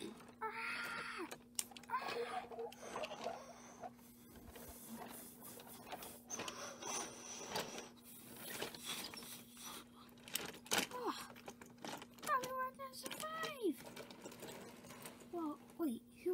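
A person's wordless vocal sounds, rising and falling in pitch, mixed with scattered clicks and knocks from toy trains and plastic pieces being handled. A steady low hum runs underneath.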